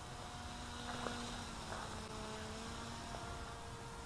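Small RC microlight model's motor and propeller buzzing faintly as it flies past, a thin steady hum of a few tones that shift slightly in pitch.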